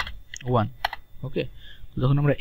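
Computer keyboard keystrokes: a few sharp key clicks as digits are typed, between brief bits of a man's voice.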